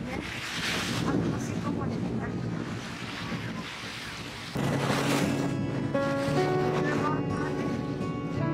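Strong wind buffeting the microphone and waves washing against a rocky breakwater. Background music plays underneath and gets louder about halfway through.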